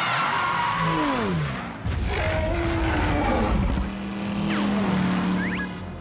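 Cartoon soundtrack: music mixed with car sound effects, tyres spinning and the car tearing away through dirt. Falling tones sound about a second in.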